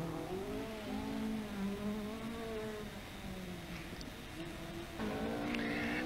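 Ford Escort Mk2 rally car's engine at high revs on a stage, the pitch climbing sharply at first, then holding and easing off over a few seconds. About five seconds in, a second car's engine comes in.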